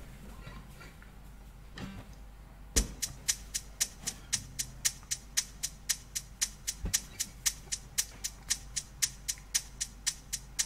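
A Boss rhythm machine starts a drum pattern about three seconds in: a kick-drum thump, then an even, quick ticking like a hi-hat or shaker at about four ticks a second, with a second thump near the middle.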